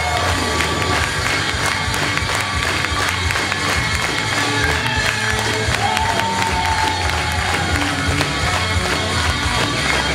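Woman singing a fast J-pop anime song live over a loud pop-rock backing track through the hall's sound system, holding a long note about six seconds in.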